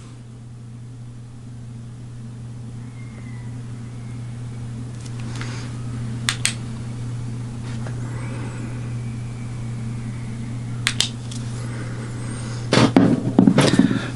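Steady low electrical hum. A UV curing light's switch clicks twice about six seconds in, turning the light on to cure a coat of UV resin on a tied fly, and clicks twice again about eleven seconds in as it is turned off. Handling noise follows near the end.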